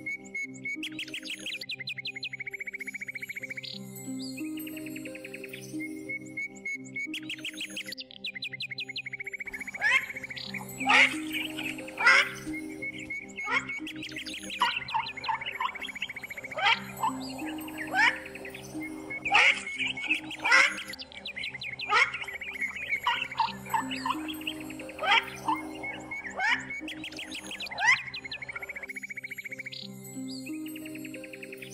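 Soft background music of long held notes with birdsong laid over it: a high trill comes back every few seconds, and from about ten seconds in, quick sharp chirps crowd in until near the end.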